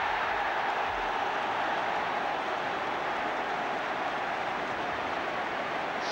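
A large football crowd cheering a home goal: a dense, steady wall of many voices that eases slightly over the few seconds.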